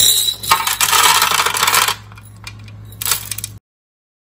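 Pearl beads pouring out of a glass jar into a clear plastic box, rattling and clattering for about two seconds. A short clatter follows near three seconds, then the sound cuts off suddenly.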